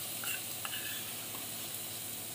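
Spiced onion-tomato masala sizzling steadily in oil in an iron kadhai as fresh cream (malai) is spooned in, with a few faint scrapes of a steel spoon.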